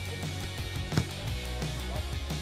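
Background music with guitar. About a second in, a single sharp thud, typical of a football being struck.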